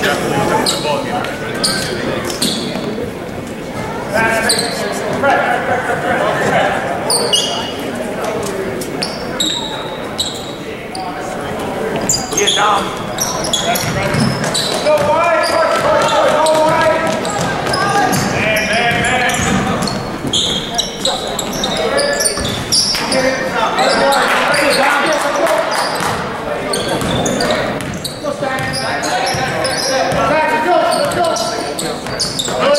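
Basketball game in a large gym: a ball dribbling on the hardwood court and footsteps, under steady crowd and player voices echoing in the hall.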